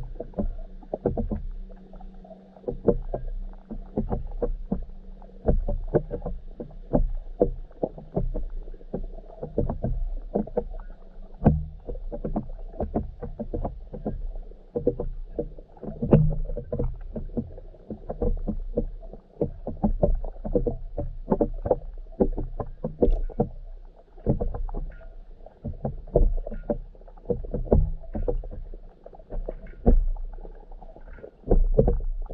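Muffled underwater sound picked up through an action camera's waterproof housing: a low rumble with frequent, irregular soft knocks and clicks.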